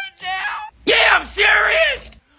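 A man yelling: a short call, then a loud, drawn-out shout about a second in.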